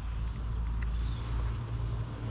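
Steady low outdoor rumble with a faint click about a second in.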